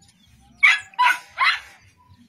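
A dog barking three times in quick succession, starting about half a second in.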